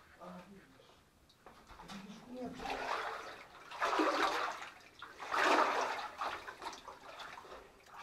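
Footsteps sloshing through shallow water on a mine tunnel floor, in three or four separate surges of splashing each about a second long, after a faint low murmur near the start.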